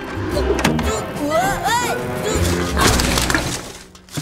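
Cartoon soundtrack: background music with a few arching swoops in pitch about halfway through, then a crash sound effect about three seconds in as a bicycle and its rider crash into a rubbish skip.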